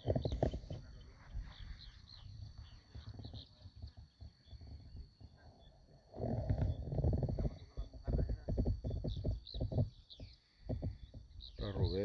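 Wind buffeting the microphone in uneven low rumbling gusts, strongest at the start and again about six seconds in, over a steady high insect drone and a few faint bird chirps.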